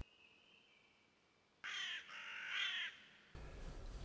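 A harsh bird call, crow-like cawing, about three calls in quick succession starting about a second and a half in. It comes after a faint, high, steady tone.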